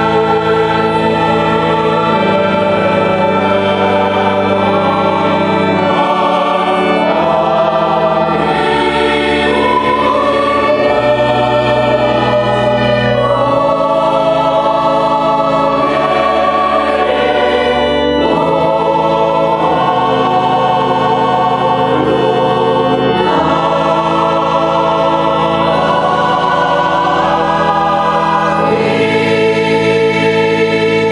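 Church choir singing a Christmas piece in parts, with held organ notes underneath.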